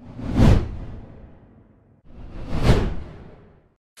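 Two whoosh transition sound effects, each swelling quickly and then fading away, the second about two seconds after the first.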